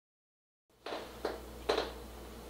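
Dead silence at first, then low room hum with three short, faint clicks spaced about half a second apart.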